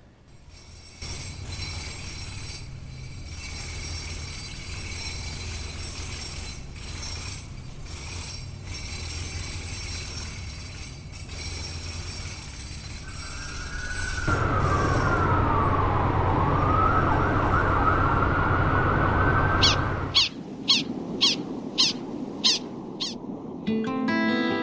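City street traffic rumble, with an emergency-vehicle siren wailing from about fourteen seconds in, its pitch sweeping down and back up for about six seconds. Near the end come a quick run of about eight short, high chirps, then music starts.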